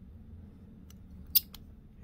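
A single sharp click from a small metal fly-tying tool being handled at the vise, with two faint ticks just before and after it.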